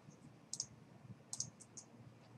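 Faint, sharp clicks of a computer mouse: a quick pair about half a second in, then a run of about four more in the second half.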